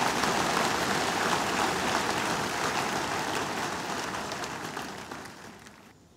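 A large congregation applauding, the clapping slowly dying away near the end.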